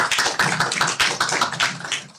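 A small audience applauding, a dense run of hand claps that dies away near the end.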